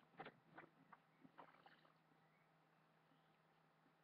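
Near silence: a few faint, soft brushing strokes in the first two seconds as a synthetic makeup buffing brush is worked over the skin, then only a low steady hum.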